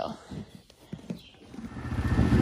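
A horse in a stall taking a treat from a hand and eating it: a few short, soft sounds at the muzzle. Near the end a low rumble fades in.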